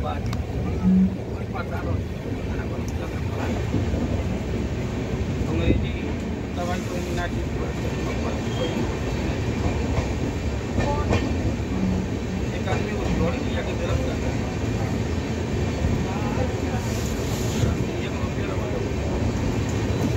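Steady running rumble inside a passenger train coach, wheels rolling on the rails as the train moves past freight wagons on the next track, with faint passenger voices in the background.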